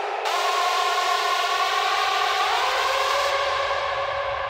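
Electronic dance music in a breakdown: a sustained synthesizer chord with no drum beat, one of its notes stepping up in pitch about halfway through.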